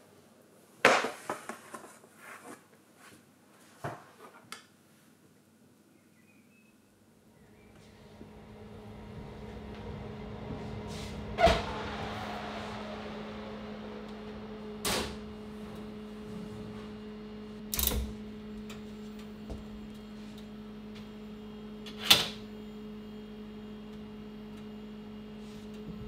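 Oven doors and metal trays being handled: sharp clicks and clunks, a few in the first seconds and then four spaced knocks. From about a third of the way in, a steady electrical hum runs underneath.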